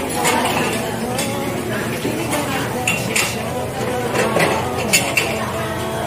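Glass lids and metal serving spoons clinking against glass serving bowls: a string of sharp clinks over background chatter.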